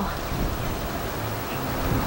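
Steady wind rushing and buffeting across the camera microphone.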